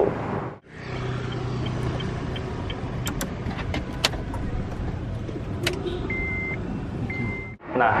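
Steady low hum of a Honda Mobilio heard inside its cabin, with a few sharp clicks. Two short high electronic beeps about a second apart come near the end.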